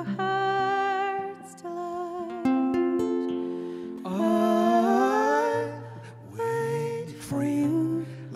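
Acoustic folk song: a woman's voice singing long, slightly wavering held notes, climbing step by step about halfway through, over an acoustic guitar.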